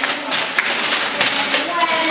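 A group of children and adults in a large room: voices mingle with scattered, irregular claps and light taps.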